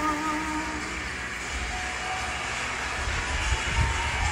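The last held notes of a song fade out right at the start, leaving steady outdoor background noise with a low, uneven rumble.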